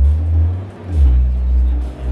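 SonicWare Liven 8bit Warps wavetable synthesizer playing deep bass notes: one that fades out about half a second in, then another that starts about a second in and holds.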